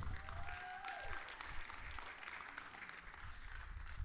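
Church congregation applauding, fairly faint and steady, with a brief call from a voice in the first second.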